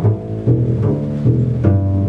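Double bass played pizzicato at a faster tempo: an even run of plucked notes, about two and a half a second, each note ringing on until the next is plucked.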